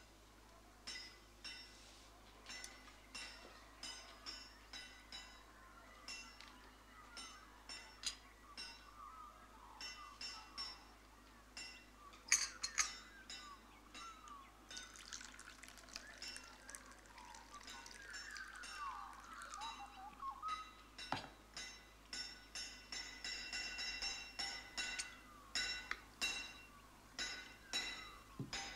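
Cutlery clinking against china plates during a meal, in a steady run of short ringing clinks, with tea poured from a teapot into a cup around the middle.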